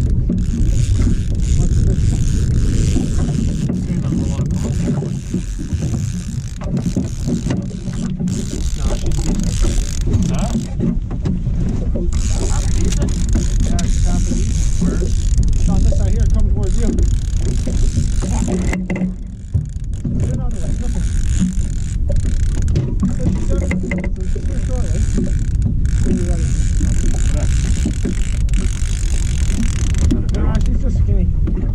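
Wind buffeting the microphone aboard a small aluminium fishing boat on choppy water: a loud, uneven low rumble that runs on with brief lulls.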